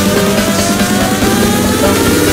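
Loud electronic dance music from a DJ set, with a synth tone rising steadily in pitch, like a build-up riser.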